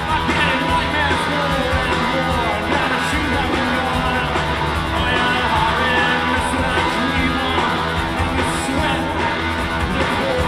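Live rock band playing with loud electric guitars and drums under a sung lead vocal, the full mix steady throughout.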